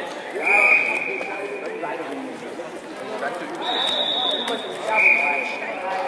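Voices talking and calling out in a sports hall, with three long, steady, high whistle blasts: one about half a second in, a higher-pitched one past the middle, and another like the first near the end. The first and last blasts are the loudest.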